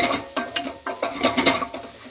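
Wooden spoon stirring and scraping onions, garlic and ginger in a stainless steel saucepan, with a light sizzle as they sauté. The scrapes and clicks come irregularly and in quick succession.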